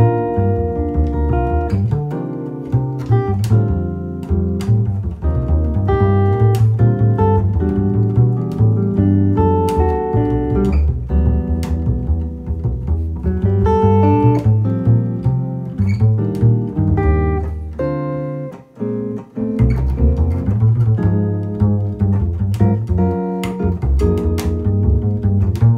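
Jazz duo of a hollow-body electric guitar (Gibson ES-330) and a plucked upright double bass playing together, the guitar's single notes and chords over a deep bass line. The music drops away for a moment about three-quarters of the way through, then carries on.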